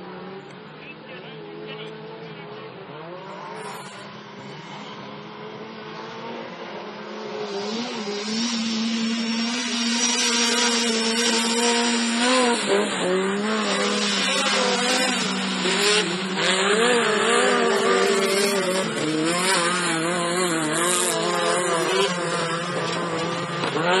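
Autocross cars racing on a dirt track, their engines revving hard, the pitch climbing and dropping again and again as they accelerate and shift gear. The engines are fainter at first and get louder from about eight seconds in as the cars come closer.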